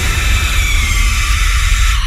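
Loud, steady static-like hiss over a deep rumble, with a faint falling tone partway through: a noise sound effect in the show's produced station-ID jingle.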